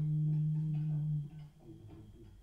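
A steady low held tone, like a hum or a bowed or struck drone, that fades out about a second and a quarter in, leaving faint room sound.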